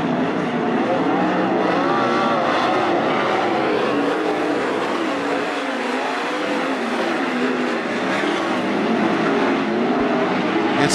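A field of 410 sprint cars racing: several 410-cubic-inch V8 engines running together, their pitches rising and falling as the cars lift off and get back on the throttle through the turns.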